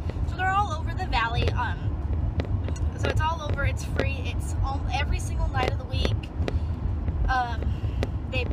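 A car's low, steady road and engine rumble heard from inside the cabin while driving, with a woman's voice in short, scattered bits over it.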